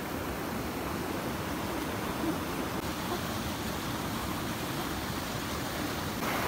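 Steady rush of river water flowing over a concrete ledge.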